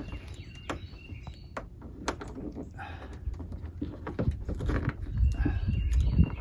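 Plastic push-pin rivet in a pickup's hood edge being pried loose with a trim-removal tool: scattered small clicks and scrapes of tool and plastic against the hood.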